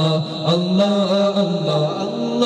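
Two men singing a Bangla Islamic devotional song through microphones, in a slow, chant-like melody with long held notes.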